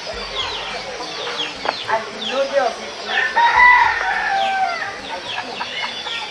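A rooster crowing once near the middle, a drawn-out call of about a second and a half, over small birds chirping in short falling notes.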